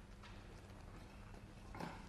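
Faint knocks and scrapes of broken concrete blocks being handled and set against each other, with one sharper knock near the end.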